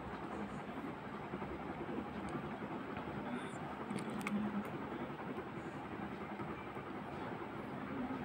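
Steady background rumble and hiss with a faint low hum, broken by a couple of faint clicks about two and four seconds in.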